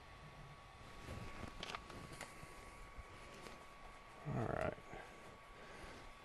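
Quiet handling at a 3D printer: a few faint clicks in the first half over a faint steady high hum, then a short murmured vocal sound about four seconds in.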